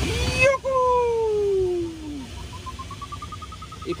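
A glider's audio variometer: a steady tone sliding down in pitch for about a second and a half, the sign of sinking air, then, after a short gap, rapid short beeps at a higher pitch, the sign of climbing. Rushing air noise is heard at the start and cuts off about half a second in.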